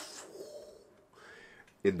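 A man's drawn-out vocal imitation of an explosion fading away, followed by near quiet with a faint breathy whistle.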